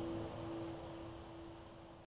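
The last note of an acoustic guitar-and-fiddle song ringing out as a single held tone, fading steadily, then cutting off suddenly at the end.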